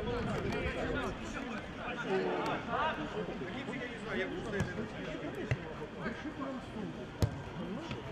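A futsal ball being kicked and struck on an outdoor pitch: a few sharp knocks, the loudest about seven seconds in, over a continuous background of indistinct voices and players' shouts.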